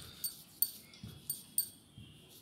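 Wooden rolling pin rolling out puri dough on a stone board, with about six light metallic clinks of jewellery on the hands against the pin.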